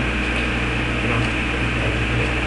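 Steady background noise: a constant low hum under an even hiss, with no distinct events.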